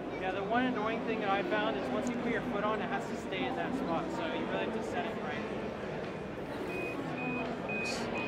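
Gyroor S300 hovershoe beeping: a short high beep about twice a second, starting near the end. The skate has been over-sped and gone into runaway protection mode, and the beeping says it needs to be turned off and on again.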